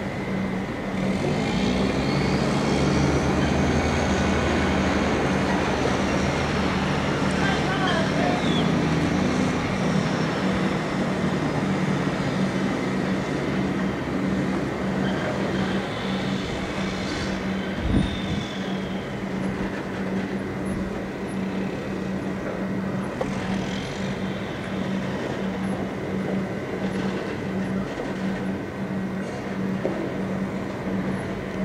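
Heavy diesel truck engine running steadily, louder for the first several seconds, with a single thump about 18 seconds in.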